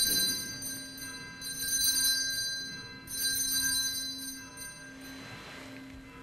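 Altar bells rung in three shakes about a second and a half apart, each jingle ringing out and fading: the signal for the elevation of the consecrated host at Mass.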